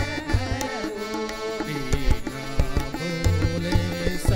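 Live devotional bhajan music. A tabla plays a lively rhythm with repeated deep bass strokes, under a harmonium's sustained melody.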